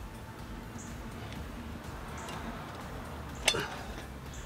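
Steady low background hiss, with one sharp click about three and a half seconds in: a click-type torque wrench breaking over as a lug nut reaches its set torque of 100 pound-feet.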